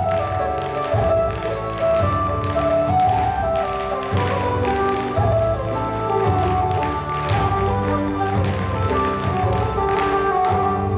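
Irish dance music with a steady melody, and the dancers' shoes tapping and clicking on the stage floor in time with it.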